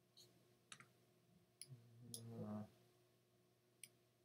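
A few faint, sharp computer mouse clicks spread through the quiet, with a brief low murmured hum about two seconds in.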